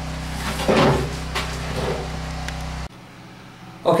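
Pressure washer running steadily with a low hum, with a few knocks and clatter of handling over it. The hum stops abruptly about three seconds in, leaving a much quieter room.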